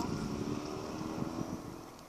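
Low, steady engine hum from a distant vehicle, fading away over the two seconds.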